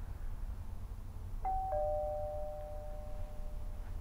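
Two-tone ding-dong doorbell chime: a higher note, then a lower note a quarter second later, both ringing on and fading out over about two seconds.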